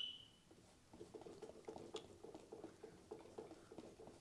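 Faint, rapid scratching of a bristle brush working oil paint onto a canvas, starting about a second in.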